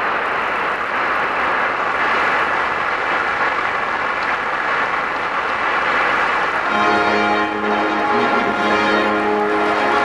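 Audience applauding steadily; about seven seconds in, music with sustained chords starts and plays along with the applause.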